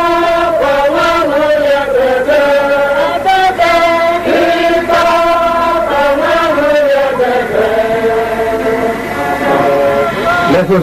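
A congregation singing a slow hymn together, many voices holding long notes that step slowly up and down; the melody sinks lower about three-quarters of the way through.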